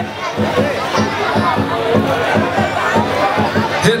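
A traditional Vietnamese wrestling drum beaten in a fast, steady rhythm of about five beats a second to drive the bout, over crowd chatter.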